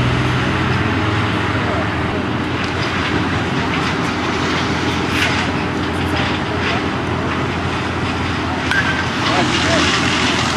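A steady low mechanical hum with background voices, with no clear single event standing out.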